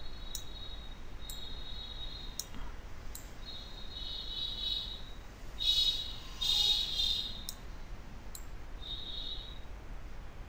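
Computer mouse clicks, a handful of short sharp clicks spaced about a second apart, as on-screen sliders are dragged. Mixed in are high-pitched squeaky sounds, the loudest two coming about six and seven seconds in.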